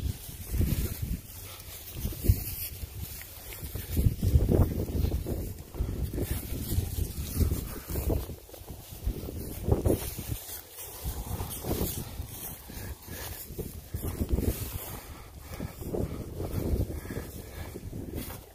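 Wind buffeting the microphone in uneven low rumbles that rise and fall throughout, with handling noise from the moving phone.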